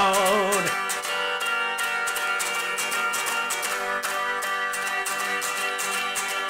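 Electric guitar played through a small combo amp in an instrumental break, with rhythmic strummed and picked strokes. A held sung note with vibrato ends under a second in.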